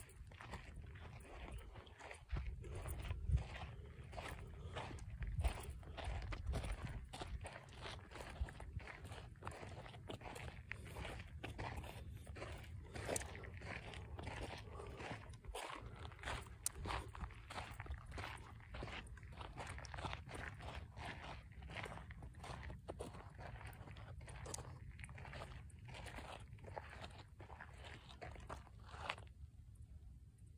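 Footsteps crunching on a dry, gravelly dirt trail at a walking pace of about two steps a second, stopping near the end.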